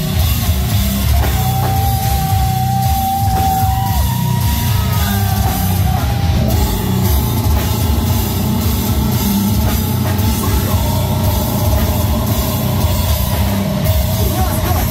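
Brutal death metal band playing live: distorted down-tuned guitars and bass with fast, dense drums, loud throughout. Long held higher notes ring over the low riff for a few seconds in the first half.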